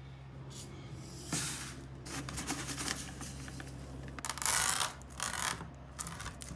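Bursts of rubbing and rattling as a canola seed sample is handled and a hand roller is run over the seeds on a strip, the loudest burst about four seconds in, over a steady low hum.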